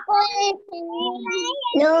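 Young children's voices singing in answer, with several high voices overlapping, heard over a video call.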